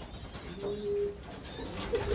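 Racing pigeons cooing in their loft, with one low, held coo a little over half a second in.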